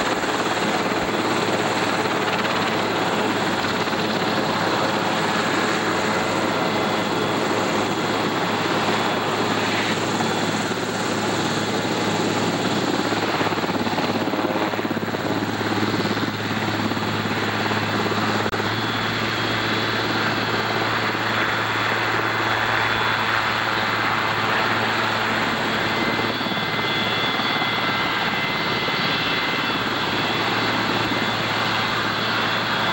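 Sikorsky HH-3F Pelican helicopter running on the ground with its twin turbine engines and main rotor turning. It makes a steady loud rush with a low hum and a thin high turbine whine over it.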